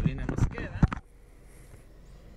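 Handling noise from a camera being gripped and moved inside a car: a few knocks and rubs in the first second, then only a faint low hiss.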